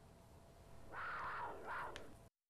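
Faint outdoor crowd cheering, a noisy swell that rises about a second in and fades away.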